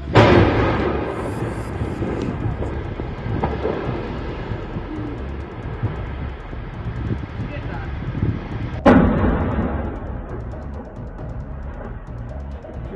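Two explosion blasts at an industrial fire, heard through phone microphones: one right at the start and another about nine seconds in, each a sudden loud bang followed by a rumbling tail that dies away over a couple of seconds. A music bed with low drum hits runs underneath.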